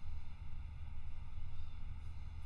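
Room tone in a pause between spoken phrases: a faint, steady low hum with light hiss, picked up by a studio condenser microphone.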